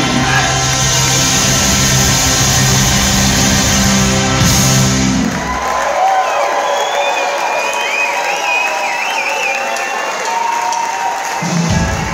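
A live rock band with horns, loud, ends a held chord about five and a half seconds in. After that, lingering high tones sound over audience cheering and high wavering whistles. The full band comes back in just before the end.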